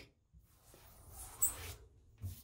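Fingers rubbing across the sprayed enamel surface of a bathtub, feeling for rough patches: a faint scuffing with a brief high squeak about one and a half seconds in.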